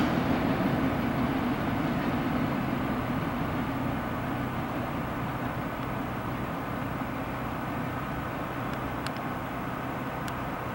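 The rolling rumble of a freight train's wheels on the rails, fading slowly and evenly as the tail end of the train moves away.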